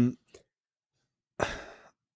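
A person's short breathy sigh about one and a half seconds in, fading out within half a second.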